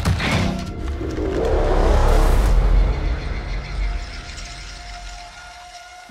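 Trailer score and sound design: a deep rumble swells to a peak about two seconds in, then slowly fades away, leaving a single held tone near the end.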